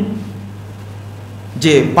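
A short pause in a man's speech, with only a steady low hum underneath; he starts speaking again near the end.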